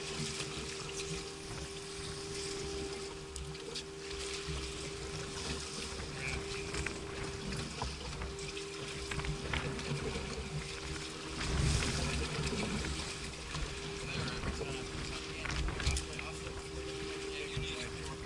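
Sounds of a small fishing boat at rest on open water: a steady hum, water lapping at the hull, and wind buffeting the microphone, with a stronger gust about twelve seconds in.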